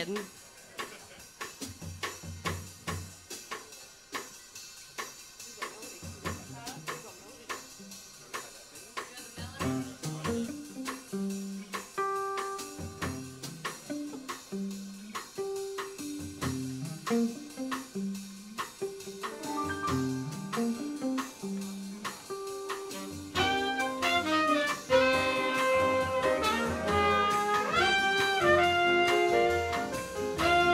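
Live small jazz band opening a tune: the drum kit plays time alone, upright bass and chords join about ten seconds in, and a horn section of trumpet and saxophones comes in with the melody about 23 seconds in, playing loudest near the end.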